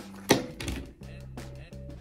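Background music with steady, held low notes. A little after the start, one short sharp noise from packaging being handled stands out above it.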